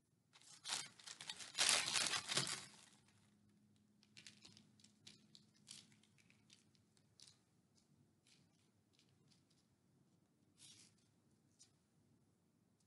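Sequins and paper being handled on a tabletop during crafting. There are about two seconds of crackly rustling, then scattered light clicks and taps.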